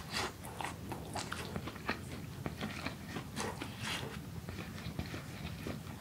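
Close-up chewing and biting of braised aged kimchi (mukeunji kimchi-jjim), with irregular mouth smacks and crunches several times a second.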